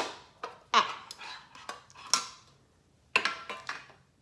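Sharp clicks and clatter from handling a Pokémon pencil case, with a quick run of clicks about three seconds in.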